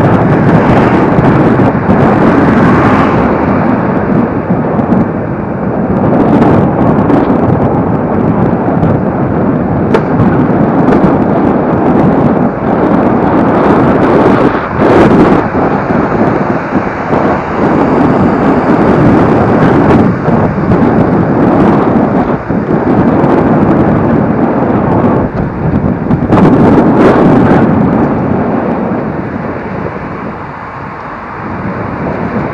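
Heavy wind buffeting on the microphone, mixed with the rolling rumble of an electric scooter riding over a paved path and occasional knocks from bumps. The noise eases near the end as the scooter slows.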